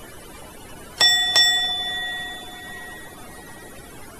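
Elevator chime: two quick bell-like dings about a third of a second apart, ringing on and fading over about two seconds.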